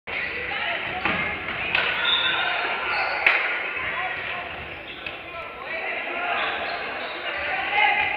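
Basketball bouncing on a hardwood gym floor amid spectators' chatter in a large echoing gym. A couple of sharp knocks stand out, the loudest about three seconds in.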